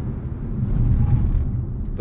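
Cabin noise of a 2024 Dodge Hornet R/T plug-in hybrid crossover on the move: a steady low drone of tyres and powertrain heard from inside the car, swelling slightly in the middle.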